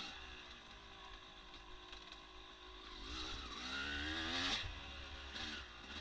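Yamaha YZ250 two-stroke single-cylinder dirt bike engine, faint, riding under throttle. It revs up with rising pitch about three seconds in, drops off about a second and a half later, then gives a short blip and opens up again near the end.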